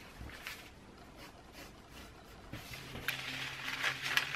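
Paper pattern sheet being handled and cut with scissors: faint rustling at first, growing louder in the last second or so, with a sharp snip about three seconds in.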